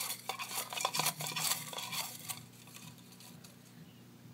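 A hand stirring through folded paper slips in a round metal tin, with a quick run of light rustles, clicks and scrapes against the metal for about two seconds before it dies down.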